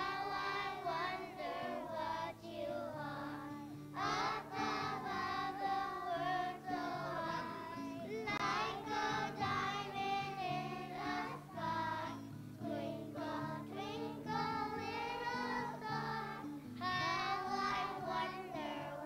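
A choir of young children singing a Christmas song in unison, with instrumental accompaniment holding steady low notes beneath the voices.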